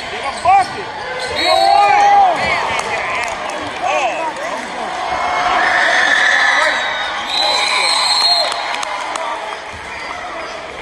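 Basketball game on a hardwood court: sneakers squeaking, the ball bouncing and voices shouting over crowd noise that swells around the middle as a shot goes up.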